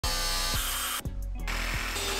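Angle grinder cutting metal: a steady whine with hiss, over background music with a beat. The sound changes abruptly about a second in.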